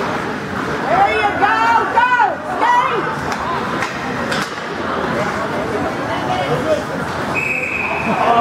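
Ice rink game sound: shouts echoing over the steady noise of play, with a few sharp stick-and-puck knocks, and a short referee's whistle near the end.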